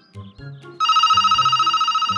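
A telephone ringing with an electronic ring that has a fast warble. It starts just under a second in and keeps going, over soft background music.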